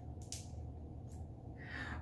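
Handling noise from a selfie stick's handle being gripped and twisted: a couple of short plastic clicks or scrapes about a quarter second in and a fainter one about a second in, over a steady low background hum.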